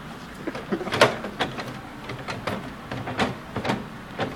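A string of irregular sharp knocks and clicks, about eight in four seconds, the loudest about a second in.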